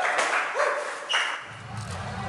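A group of young men shouting and cheering in short bursts. A steady low rumble comes in near the end.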